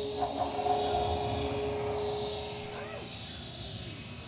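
Live electronic music from a Doepfer analog modular synthesizer: a steady held tone that stops about three seconds in, under hissy noise sweeps that rise and fall in the high register.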